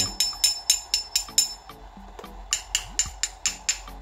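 Aluminium driver casing of an LED mini laser tapped repeatedly with a small metal bracket, each strike giving a bright, ringing clink. A run of quick taps, a short lull about two seconds in, then another run. The clear ring marks the case as aluminium rather than iron or plastic.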